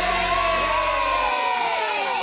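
A group of children cheering and whooping together as the band's song ends, over the last held low note of the music, which stops a little past halfway through.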